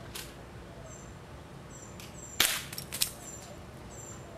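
A single sharp BB gun shot a little past halfway through, followed by a few quick lighter clicks, as the rope-hung target is knocked down. High, short bird chirps repeat in the background.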